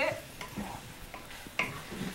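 Ground elk meat sizzling as it browns in a frying pan, with a few light knife taps on plastic cutting boards as peppers are sliced.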